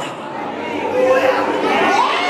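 Speech: a man preaching into a handheld microphone over the hall's sound system, with chatter from the seated congregation.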